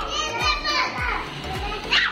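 Young children's voices chattering over background music with a steady beat.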